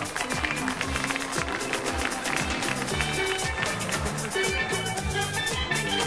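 Steel band music: steelpan notes over a steady drum beat.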